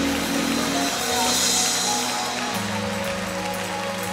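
Live gospel church music: sustained keyboard chords that change to a new chord about two and a half seconds in, with the voices of the choir and worshipping congregation underneath.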